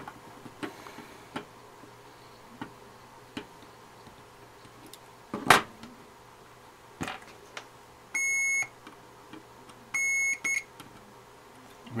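Two sharp snips of side cutters clipping out a suspected shorted tantalum capacitor on a circuit board, the first the loudest, then a multimeter's continuity tester giving two steady high beeps of about half a second each as the probes check the 12 V rail for a short.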